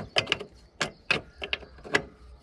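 Irregular metallic clicks and knocks, about eight in two seconds, as a body-mount bolt is worked by hand up inside a Mitsubishi Pajero's body, knocking against the sheet-metal around the mount hole.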